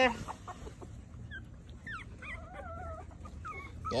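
Young puppies whimpering: a string of faint, thin, high whines and squeaks, with one longer wavering whine about halfway through.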